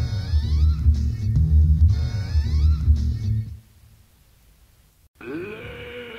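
Electronic music with a pulsing bass line and rising synth glides, which ends about three and a half seconds in. After a short silence the next track begins with a pitched sound that swells and bends up and down in pitch.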